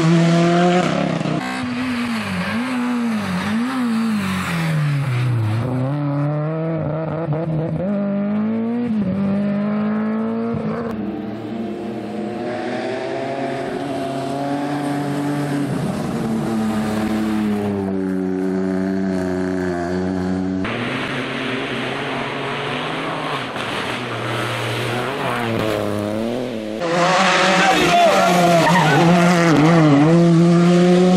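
Rally car engines running hard on a gravel stage, revving up and dropping back through gear changes as the cars pass, across several edited shots. The revving is loudest at the start and again from near the end.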